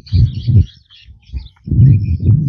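Birds chirping in short high calls, with two loud, low rumbling bursts, one just after the start and one near the end.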